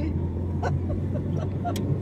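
Car engine and road noise heard inside the cabin while driving: a steady low drone, with a couple of light clicks.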